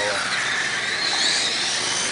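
Several radio-controlled racing cars running on the track, their electric motors and gears making a high whine that rises and falls in pitch as they accelerate and slow through the corners.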